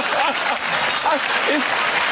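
Studio audience applauding and laughing, with scattered voices over the clapping.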